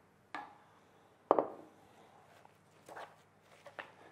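A spatula knocking against a stainless steel mixing bowl while beaten egg whites are scraped in and folded into cake batter. There are four sharp knocks, the loudest about a second in.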